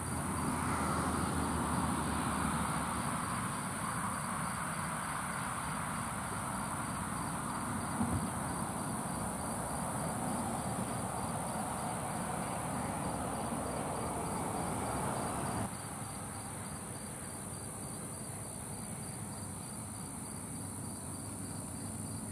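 A steady, high-pitched chorus of night insects such as crickets. Under it runs a lower background rumble that drops away suddenly about two-thirds of the way through.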